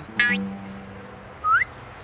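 Cartoon comedy music sting: a brief pitched note, then a low note held for about a second, then a short rising whistle-like glide about a second and a half in.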